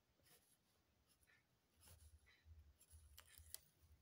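Near silence, with a few faint pencil strokes scratching on paper.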